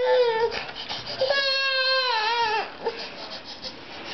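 Baby crying: a short wail at the start, then a longer wail of about a second and a half that falls in pitch at its end, followed by quieter sounds.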